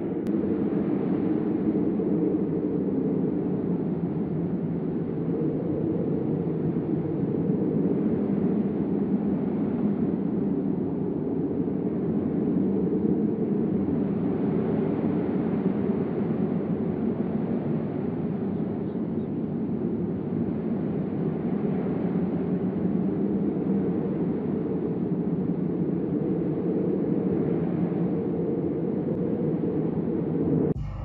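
Steady airplane cabin noise: a constant low rush of engine and air noise that does not change, then cuts off suddenly just after the end.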